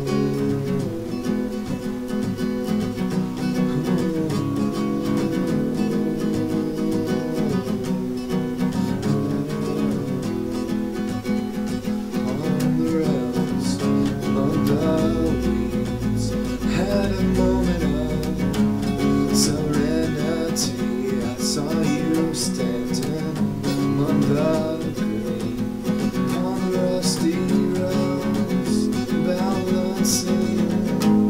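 Acoustic guitar, capoed, strumming chords steadily, with sharper, more percussive strokes in the second half.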